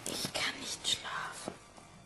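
A voice whispering a few short phrases in the first second and a half, then fading to a faint background.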